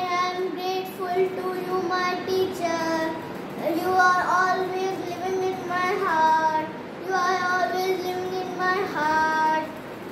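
Young boy singing a Teacher's Day song solo, holding long notes and sliding between pitches.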